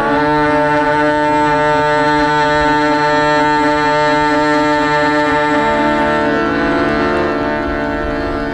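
Hindustani thumri performance with harmonium: a woman's voice slides up into one long held note lasting about six seconds over a steady drone, then moves on near the end.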